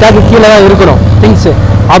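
A man talking close to the microphone over a steady low rumble of street traffic.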